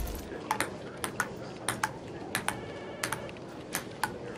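Table tennis rally: the ball clicking off paddle and table in quick pairs, a bounce and a hit about every two thirds of a second.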